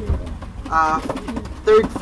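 Domestic racing pigeon cooing briefly, with a man's voice near the end.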